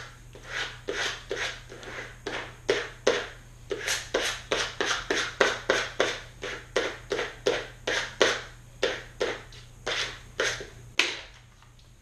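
Vinyl squeegee rubbed back and forth over layered adhesive vinyl on its backing sheet, burnishing the decal's colour layers down together: a fast, steady run of short scraping strokes, about three a second, that stops about a second before the end.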